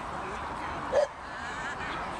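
A dog gives one short bark about a second in, over a steady murmur of voices.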